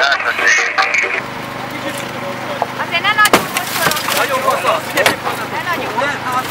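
Steady engine hum of the hydraulic rescue tool's power unit as firefighters cut into a crushed truck cab, with a few sharp cracks from the wrecked cab as it gives way, and voices over it.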